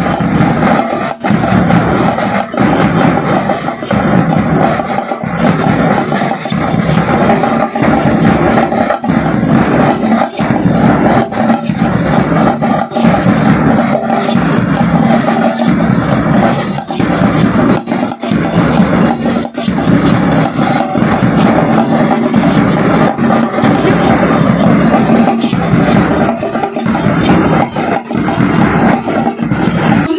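A drum band plays continuously and loudly: snare drums and bass drums are beaten with sticks in a dense, driving rhythm, with small hand cymbals clashing along.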